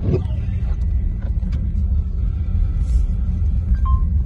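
Steady low rumble of a car driving on a snow-covered road, heard from inside the cabin.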